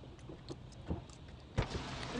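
A car door thumps about one and a half seconds in as someone gets into the car, after a few faint light clicks, over a low steady hum inside the car.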